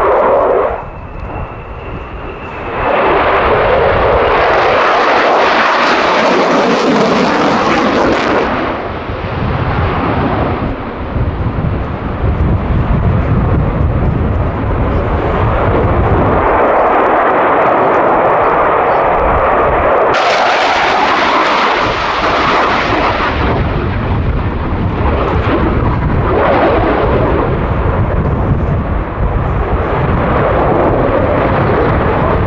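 A Finnish F/A-18C Hornet's twin General Electric F404 turbofan engines are heard loud and continuous during a display, with the noise swelling and fading as the jet manoeuvres. About a second in, the sound drops briefly and a thin steady whine shows through. Around twenty seconds in, a hissier surge begins.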